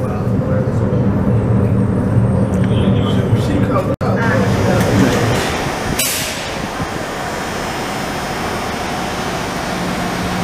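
Miami Metromover people-mover cars running: a steady low hum for the first five seconds, then a sudden loud hiss about six seconds in that fades over about a second, followed by steady running noise.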